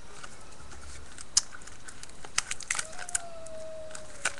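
Plastic craft packaging and trims handled on a tabletop: a few sharp clicks and crinkles, the loudest about a second and a half in and a cluster later on. A faint whine slides slowly downward near the end.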